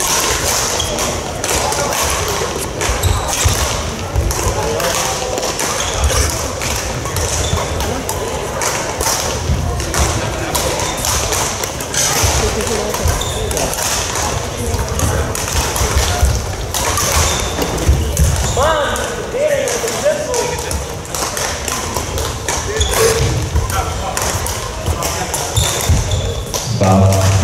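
Badminton play in a large, echoing sports hall: sharp racket hits on shuttlecocks, frequent and irregular, from this and neighbouring courts, over a constant babble of voices. A few short shoe squeaks on the court floor come about two-thirds of the way in.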